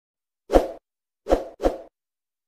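Three short pop sound effects from an animated video intro: one about half a second in, then two close together in the second half.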